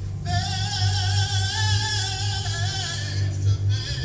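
A singer holding one long note with a wavering vibrato for about two and a half seconds, over a steady low hum.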